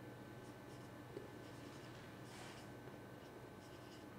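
Whiteboard marker writing on a whiteboard: a few faint, short scratching strokes as the tip is drawn across the board, the clearest a little after two seconds in.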